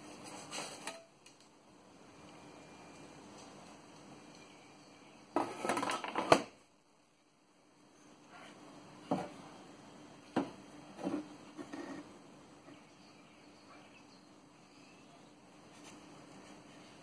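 Hard objects being handled on a wooden workbench: a short clatter about five seconds in that ends in a sharp knock, then a couple of single knocks and a few light taps as the removed wooden saw handle is picked up and turned over.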